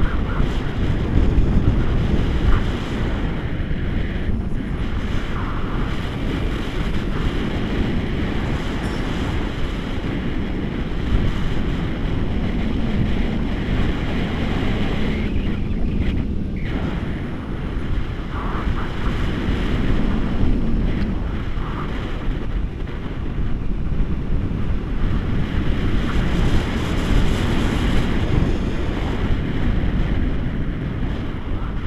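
Wind rushing over an action camera's microphone on a selfie stick, from the airflow of a tandem paraglider in flight: a loud, steady rush with small gusts.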